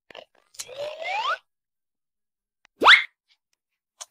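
Two rising comic sound effects: a whistle-like upward glide lasting under a second, then a quicker, louder upward swoop about three seconds in.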